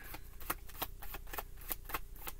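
Tarot cards being shuffled by hand: a quick run of irregular clicks of card against card.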